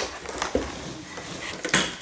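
Plastic pieces of a Pop-Up Olaf barrel game being handled, with a few light clicks and knocks, the sharpest near the end.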